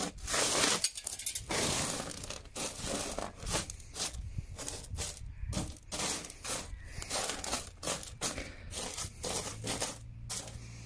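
Small pebbles of washed sapphire gravel raked and spread by hand across a sorting table, stones scraping and clicking against each other and the table surface, busiest in the first couple of seconds.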